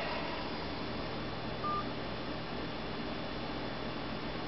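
A single short touchtone keypad beep from a novelty 1957 Chevy telephone, about a second and a half in, over a steady low background hum.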